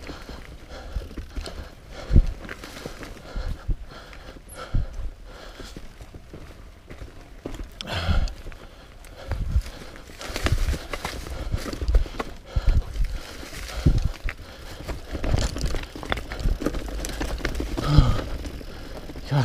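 Mountain bike riding fast down a leaf-covered dirt singletrack: tyres rolling over leaves and dirt, with irregular knocks and rattles as the bike hits roots and bumps, busier and louder in the second half.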